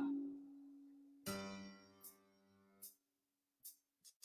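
A single chord struck on a band instrument, ringing out and fading over about a second. Three faint clicks follow, evenly spaced about three-quarters of a second apart, like a count-in before the song.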